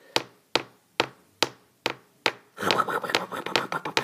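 A steady series of sharp clicks, a little over two a second, with about a second of crackly rustling near the end.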